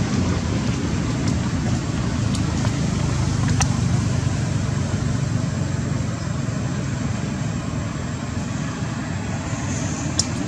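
Steady low background rumble, with a couple of faint small clicks a few seconds in.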